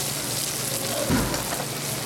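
Sculpin fillets sizzling in hot grapeseed oil in a pan, a steady crackling fry, with a brief low bump about a second in.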